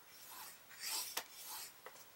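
Faint scraping and rubbing as thick cardstock is pushed into place on a plastic scoring board and a bone folder is drawn along a scoring groove. There are a few short strokes and one sharp click about a second in.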